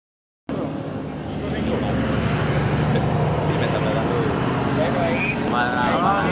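Steady low rumble of road traffic with people talking over it; a clearer voice comes in near the end.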